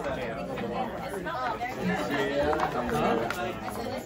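A roomful of people chatting at once: many voices overlapping, with no single clear speaker.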